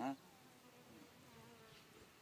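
Faint buzzing of a flying insect, a thin, slightly wavering hum, following a short spoken syllable at the start.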